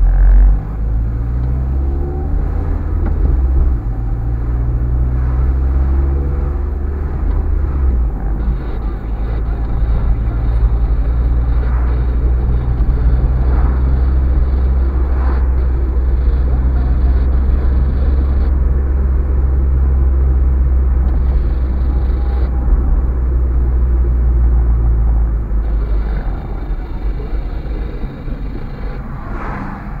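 A car's engine and tyre noise heard from inside the cabin as it drives: a steady low rumble, with the engine note climbing during the first few seconds as the car pulls away.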